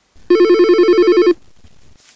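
Telephone ringing: one ring about a second long, a rapid two-tone electronic trill.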